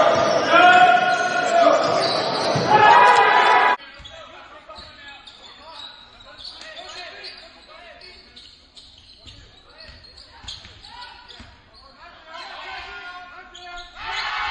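Live basketball game sound echoing in a gymnasium. Loud voices for the first few seconds, then an abrupt cut to quieter play with a ball bouncing on the hardwood court and faint voices.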